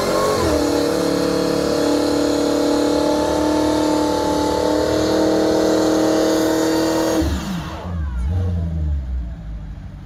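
Supercharged 6.2-litre V8 of a Dodge Charger Hellcat Redeye held at high, steady revs through a line-lock burnout, with the rear tyres spinning in place. About seven seconds in, the revs fall away as the throttle is released.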